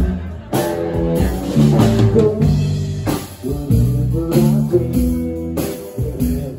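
Live rock band playing an instrumental passage without vocals: electric guitar, electric bass and drum kit, with regular drum hits under sustained bass and guitar notes.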